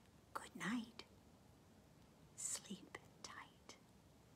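A woman whispering softly in two short phrases, the second with a hissing 'sh' sound.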